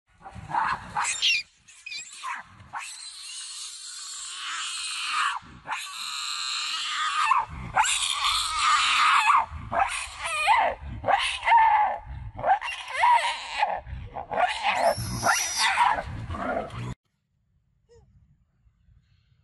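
Macaque monkeys screaming in a long run of loud, wavering high-pitched calls that cut off suddenly near the end.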